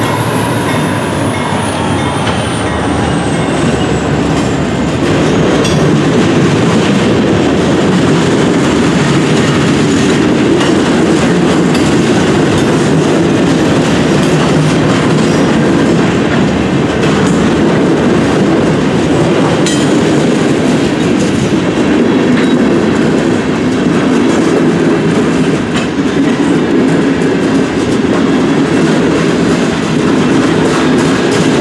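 Freight cars (gondolas and hoppers) of a freight train rolling steadily through a grade crossing: continuous wheel rumble with clickety-clack over the rail joints. A falling whine fades out over the first few seconds as the locomotive moves off.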